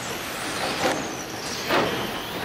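Several electric RC race cars running on a carpet track: a steady motor and tyre hiss with a faint high whine that falls in pitch. Two short knocks come, one about a second in and one near the end.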